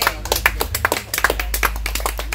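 A small group of people clapping their hands, quick irregular claps overlapping.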